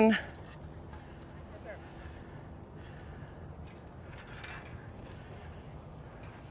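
Quiet outdoor background with faint distant voices.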